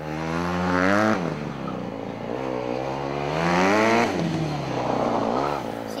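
Motorcycle engine revving up and dropping back several times as the bike accelerates out of tight turns and backs off. It climbs briefly in the first second, makes a longer climb to about four seconds in, then rises once more near the end.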